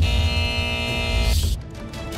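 TV show transition sting: a deep bass hit under a held musical chord for about a second and a half, ending in a short whoosh.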